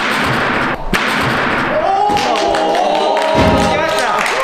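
A hard thump of feet hitting a springboard at take-off, then a second thud about a second later as the vaulter clears a 13-tier vaulting box and lands on the mat. From about two seconds in, excited raised voices cheer the successful vault.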